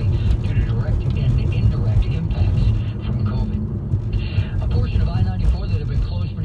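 Steady low road and engine rumble inside a moving car's cabin, under a voice from a news radio broadcast playing on the car's speakers.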